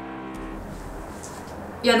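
A steady pitched hum that stops about half a second in, followed by a low even background noise, like outdoor traffic ambience, until a woman's voice begins near the end.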